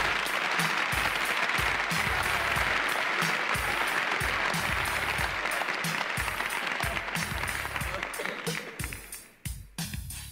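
Recorded live audience applauding at the end of a stand-up bit, the applause dying away near the end. Under it runs a steady hip-hop drum beat with about two kick-drum thumps a second.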